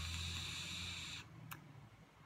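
Vape tank atomizer during a draw: the heated coil sizzles and air hisses through it steadily for just over a second, then stops. A single short click follows.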